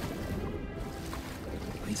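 Steady low rumble of underwater ambience beneath the sea ice, with a few faint steady tones over it.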